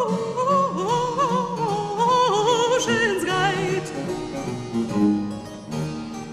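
A soprano voice singing a Baroque song with wide vibrato over harpsichord accompaniment. The voice stops about two-thirds of the way through, leaving the harpsichord playing on its own.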